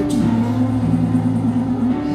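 Live gospel praise music: a man sings into a microphone, holding a long wavering note over a sustained instrumental backing.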